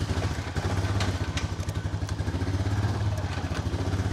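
A four-wheeler (ATV) engine catches right at the start and runs steadily at low revs, with an even, rapid chugging pulse, as the machine begins to back out slowly.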